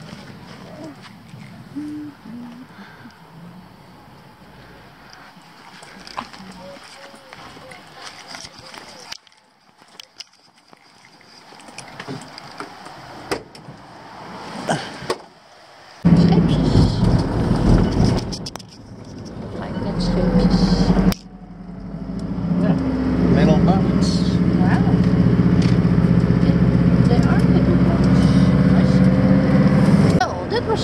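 An old Mercedes-Benz T1 camper van's engine starts suddenly about halfway through and then runs loudly and steadily as the van pulls away, with its pitch rising and falling through gear changes.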